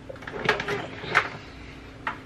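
Plastic knocks and clunks as a bread machine is handled and lifted, with two sharp knocks about half a second and a second in.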